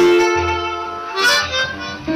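Blues harmonica playing a long held note, then a brighter, higher phrase about a second in, over bottleneck slide guitar and upright bass in a slow blues.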